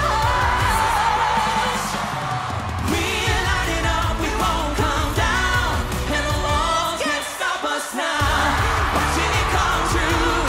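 Live pop song: singing over a band with a heavy bass and beat. The bass drops out briefly near the end and then comes back in.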